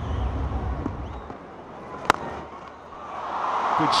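A single sharp crack of a cricket bat striking the ball about halfway through, then stadium crowd noise swelling into a cheer near the end.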